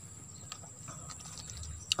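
Insects trilling: a faint, steady, high-pitched buzz, with a single short click near the end.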